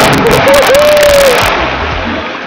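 Loud splash of a person plunging into deep water, a burst of water noise that dies down after about a second and a half. A long shout from an onlooker rises over the splash.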